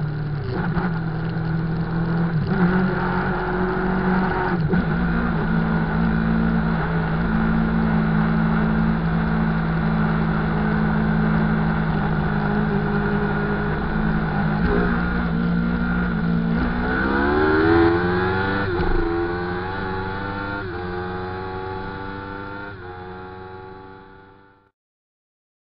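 Inline-four 1000 cc sportbike engine running steadily at cruising speed, then revving hard as it accelerates, its pitch climbing in steps through about three quick upshifts and fading as it pulls away.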